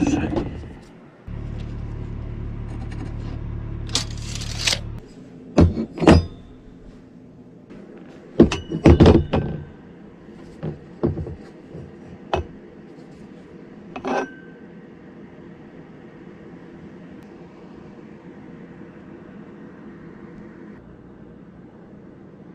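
Metal parts and tools being handled and set down on a desk: a series of knocks and clinks, loudest about six and nine seconds in, after a steady low hum that stops about five seconds in.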